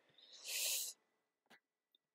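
A man's short breath between phrases, a hiss lasting about half a second, followed by a single faint click.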